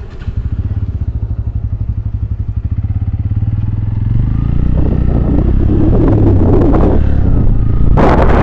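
Motorcycle engine running at low revs with a fast, even firing pulse, then pulling away and gathering speed. Wind rushing over the microphone grows louder from about halfway through.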